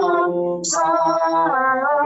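A solo female voice singing a devotional song in long, held notes, over a steady low accompaniment.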